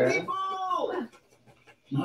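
A voice from a television commercial: one short, drawn-out vocal sound that rises and then falls in pitch, followed by about a second of near silence.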